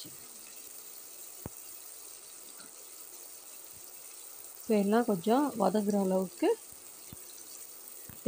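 Onion, tomato and green chilli masala frying in oil in a pressure cooker: a steady, low sizzle, with one faint click about a second and a half in.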